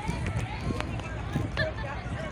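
Indistinct voices in the background over a low wind rumble on the microphone.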